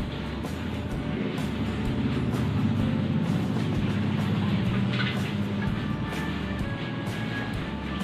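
Background music over a steady low rumble from a lit gas stove burner and a wok of water at a rolling boil.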